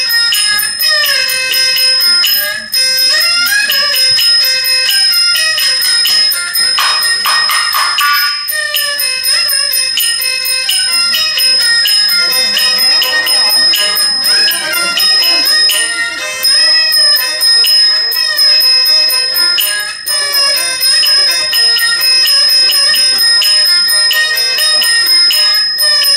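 Live Chinese shadow-play band music: a rapid, unbroken clatter of small percussion over a steady high metallic ring, with pitched instruments playing a wavering melody line.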